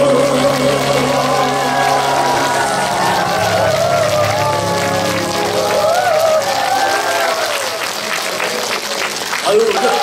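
Large audience applauding as the song's backing music ends on a held chord in the first few seconds, with voices calling out over the clapping.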